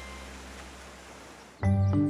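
Background music: a held chord fades away, then a new piece starts suddenly near the end with a loud low note.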